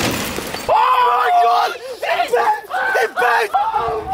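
A brief burst of hiss-like noise, then a run of loud, high-pitched yells and screams from excited voices, each shout rising and falling in pitch.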